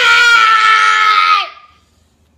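A toddler's loud, drawn-out scream on one held pitch that sinks slightly and fades out about a second and a half in.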